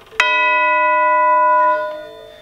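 A single chime tube (tubular bell) struck once with a chime hammer, giving a sharp attack and then a full, sustained bell-like ring with many overtones that fades near the end. The tube is hit from the side so the whole impact goes into the stroke, which gives a full tone rather than the thin sound of a stroke angled down from the top.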